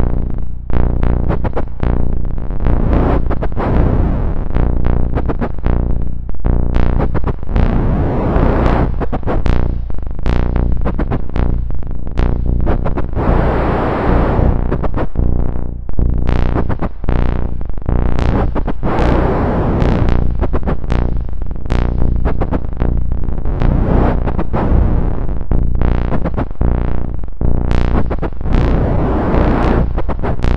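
Eurorack modular synthesizer playing a generative patch: a steady low drone under a stream of short, sharp noise hits kept in time by a modulator clock. Noisy swells sweep up and down every few seconds as the filter opens and closes under LFO and hand control.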